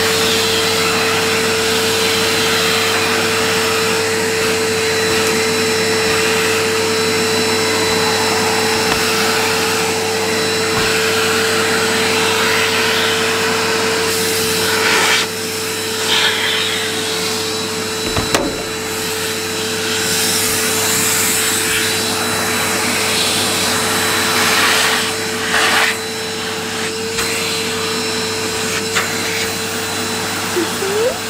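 Numatic Henry canister vacuum cleaner running on carpet, a steady motor whine under the rush of suction. In the second half the suction sound dips and surges several times, with a short click a little past halfway.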